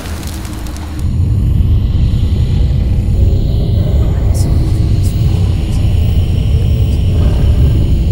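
Horror-trailer sound design: a deep rumbling drone that swells up about a second in and then holds loud and steady, with faint dark music above it.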